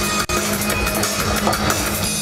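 Live electronic fusion music with drums, played loud through a concert PA, with a brief dropout about a quarter second in.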